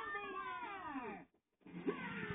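A cartoon character's long falling cry ("Ahh...") heard from a television, breaking off about a second and a half in. More cartoon sound follows near the end.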